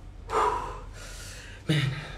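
A woman's short breathy gasp about half a second in, followed near the end by a brief voiced sound from her.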